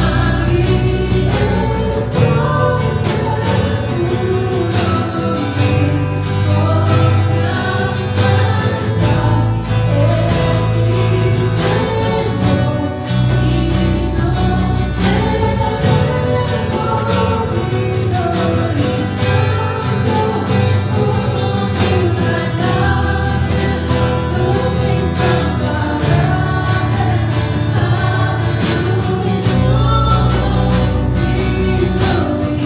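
Live church worship band playing a slow Spanish-language worship song: a woman sings lead over acoustic and electric guitar with drums keeping a steady beat.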